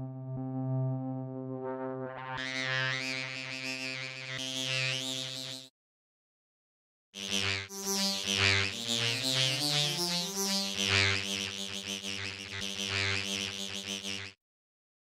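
Dawesome MYTH software synthesizer playing a low sustained note through its oscillator-sync transformer, its overtones shifting as an LFO moves the sync amount. The first note turns much brighter about two seconds in and stops just before six seconds. After a short silence a second note starts, and its upper harmonics slide up and down before settling.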